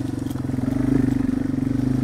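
Yamaha TW200's single-cylinder engine running as the bike is ridden slowly over a rough, leaf-covered dirt trail, its note dipping a little and then picking up about a second in.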